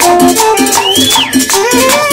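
Live cumbia band music: a saxophone melody over a fast, even high percussion rhythm and a repeating bass line. About a second in, one melody note slides up and then drops.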